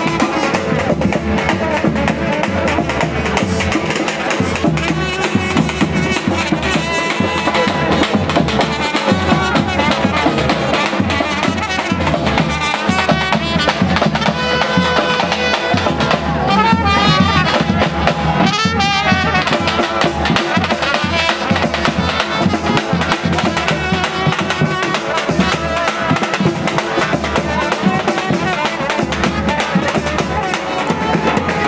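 Street band of trumpet and snare drum playing a tune with a steady drum beat. A warbling high sound rises over the music a little past the middle.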